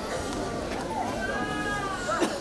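Indistinct chatter of an audience in a large hall, with a high-pitched voice drawn out through the second half, while people settle after being asked to stand.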